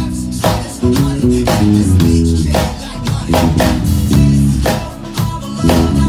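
Electric bass and drum kit playing a busy groove: a moving bass line under regular kick, snare and cymbal strikes, with no singing.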